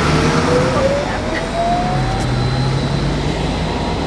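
Articulated city bus moving off, its drive whine rising steadily in pitch as it gathers speed over a low, steady engine hum.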